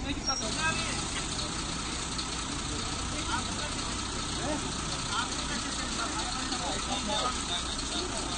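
A vehicle engine idling steadily, with indistinct voices over it.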